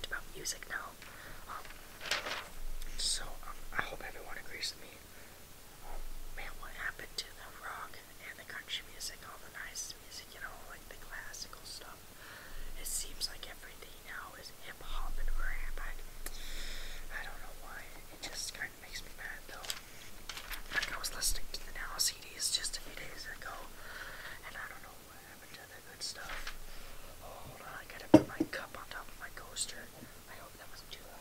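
A person whispering close to the microphone, with short clicks scattered through it and one sharp click about two seconds before the end.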